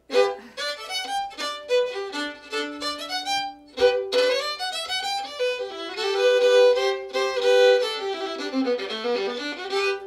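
Solo fiddle played with the bow, a quick run of old-time fiddle-tune notes with a short break about four seconds in. The player is trying to start a tune from memory and cannot get it going, breaking off at the end.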